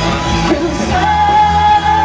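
Live rock band playing with loud singing; about a second in, a voice takes up one long held note.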